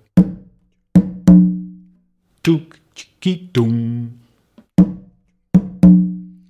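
Tumba conga played with the hands in a samba bass pattern imitating the Brazilian rebolo: short, damped closed notes, then open tones that ring low. The phrase repeats twice, and the ringing open tones are the loudest strokes.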